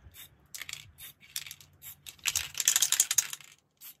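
Spray paint can and its plastic caps being handled: scattered clicks, then a dense run of sharp clicks and rattles from about two seconds in.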